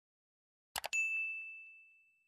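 Two quick mouse-click sound effects, then a single bell ding that rings out and fades over about a second and a half: the sound effect of an animated subscribe-and-notification-bell overlay being clicked.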